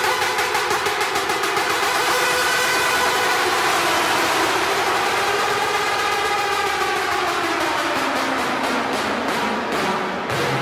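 Hard dance music playing in a DJ set: a build-up of sustained synth tones over a fast steady beat, with a sweep that rises and falls in the middle.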